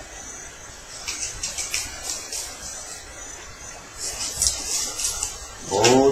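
Playing cards being handled at a table: light scratchy clicks in two short clusters, about a second in and again about four seconds in.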